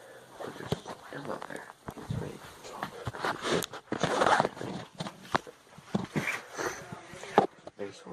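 Indistinct voices, with the scuffs and clicks of a handheld phone being carried while someone walks; a louder rustling noise comes about halfway through.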